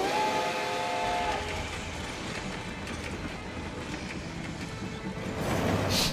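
Steam locomotive whistle sounding a chord of several steady tones for about a second and a half, then the train running steadily, from an anime soundtrack.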